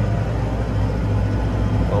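Deutz-Fahr 6135 tractor driving on the road in 20th gear, heard from inside the cab as a steady, even low hum of engine and drivetrain.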